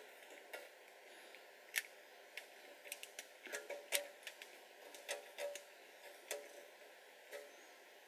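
A small screwdriver tip scraping and picking at the hard painted plastic of an action figure's foot: faint, irregular clicks and light scratches as it chips through the gold paint to the cream plastic underneath.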